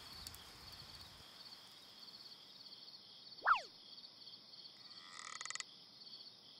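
Faint night chorus of frogs and insects, an evenly pulsing high trill that runs throughout. About three and a half seconds in there is a quick falling whistle-like glide, and a rattling croak follows around five seconds in.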